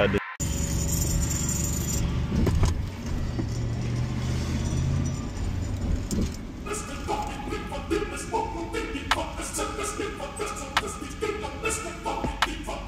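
Car engine running, heard from inside the cabin, with a steady low rumble. About six and a half seconds in, hip hop music with a steady beat starts and plays over it.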